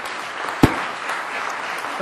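Audience applauding steadily, with a single sharp thump a little over half a second in, the loudest moment.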